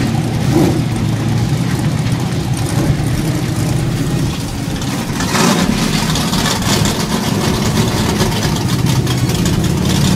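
Dirt late model race car engines running in the pits, one car driving past on wet dirt. The sound is steady, with a louder surge about halfway through.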